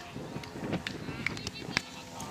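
Futsal players' footsteps running on artificial turf, with voices calling and several sharp knocks, the loudest near the end.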